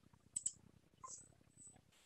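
A computer mouse is clicked twice in quick succession, about half a second in, over a faint, intermittent high hiss.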